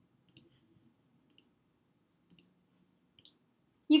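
Computer mouse clicks: four short, sharp clicks about a second apart, some of them doubled.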